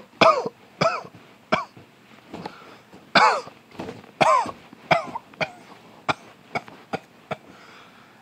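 A man coughing and clearing his throat over and over, about a dozen short coughs with a couple of longer, drawn-out ones in the middle. The coughing is put on to sound sick.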